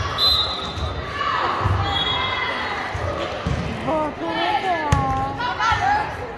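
A volleyball thudding on a hardwood gym floor and being struck hand-on-ball with a sharp smack near the end, as a serve goes over and is passed. Sneakers squeak against the floor, with players' voices ringing through a large hall.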